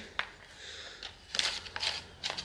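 Handling noise from a plastic cable storage reel and a caravan hook-up cable being threaded through it. A single sharp click comes first, then a cluster of plastic clicks and rustles about a second and a half in.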